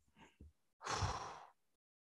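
A man sighing: one breathy exhale about a second in, lasting half a second, after a couple of faint mouth clicks.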